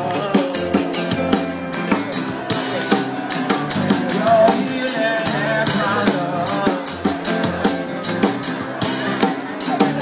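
A live band playing: a drum kit keeps a steady beat of kick and snare under acoustic and electric guitars.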